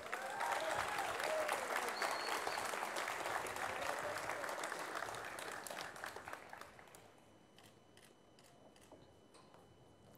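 Audience applauding a graduate, a dense clatter of clapping that dies away about six or seven seconds in, leaving a few last scattered claps.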